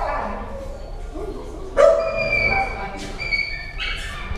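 Dogs barking and yipping in shelter kennels, with a loud, sharp bark a little under two seconds in followed by a high, thin sound.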